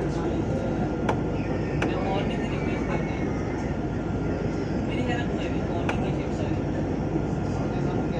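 Inside a moving Dubai Tram: a steady low running rumble of the tram rolling along its track, with a few sharp clicks.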